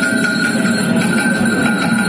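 Free-improvised double bass and two guitars playing a noisy texture: a steady high ringing tone is held over a dense, churning low sound scattered with small clicks and scrapes.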